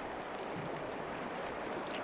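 Steady, fairly quiet outdoor background hiss of wind over open water, with no distinct events.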